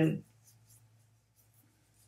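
A woman's trailing spoken word cut short, then a pause in the talk with only faint room tone and a low steady hum.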